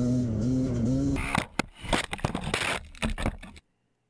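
Dirt bike engine running with a wavering pitch, then about a second in a jumble of crashing, scraping and rustling noise with sharp knocks as the bike goes down in tall grass. The sound cuts off suddenly shortly before the end.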